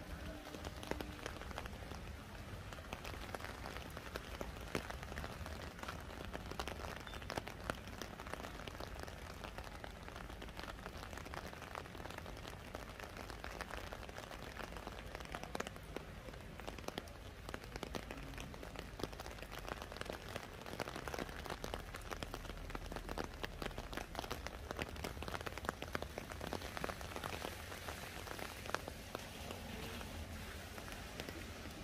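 Steady rain falling, with many individual drop impacts close by ticking over an even hiss, and a low steady rumble underneath.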